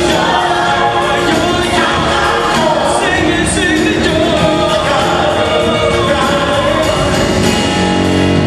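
Mixed vocal ensemble singing in harmony on microphones, backed by a live band, in a Christmas song.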